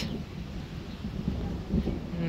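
Low, steady rumble of thunder from a storm overhead, mixed with wind buffeting the microphone.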